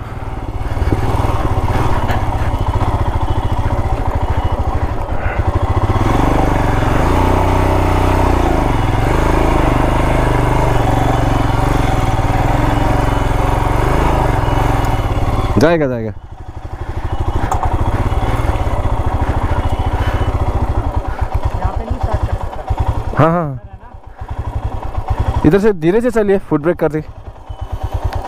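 Single-cylinder Royal Enfield motorcycle engines running at low speed on a rough, rocky dirt track, with a steady low pulse from the exhaust. The engine note drops briefly about 16 seconds in and again past the 23-second mark. A voice calls out over the engines near the end.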